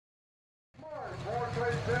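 Silence, then about a second in the sound cuts in on a diesel Limited Pro Stock pulling tractor idling low and steady, getting louder toward the end.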